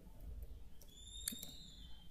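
Faint room tone with a single keyboard click about halfway through, and a faint high whistle-like call, bird-like, lasting about a second and falling slightly in pitch.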